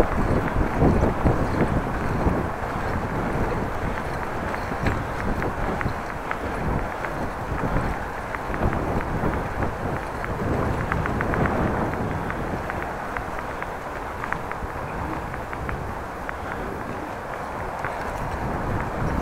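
Bicycle riding over brick paving: steady tyre rumble with many small rattling clicks, mixed with wind noise on the microphone.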